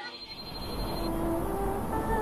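Steady low rumble of a vehicle driving along a dirt road, with faint music tones coming in about a second in.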